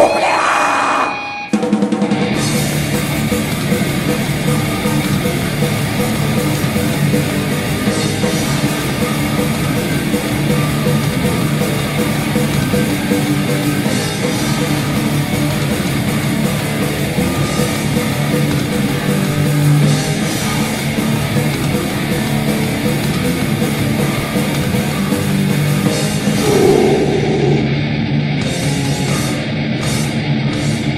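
Live grindcore recording: a band with distorted guitars, bass and drums playing at full speed. The music cuts out briefly about a second and a half in and kicks back in about two seconds in.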